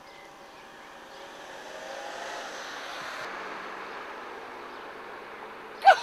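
A car passing along a street: its tyre and engine noise swells to a peak about two to three seconds in, then slowly fades. A brief loud sound cuts in right at the end.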